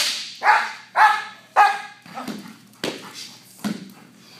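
A German Shepherd protection dog barking hard at an agitator: a sharp crack at the very start, then three loud barks in quick succession, then a few fainter sounds.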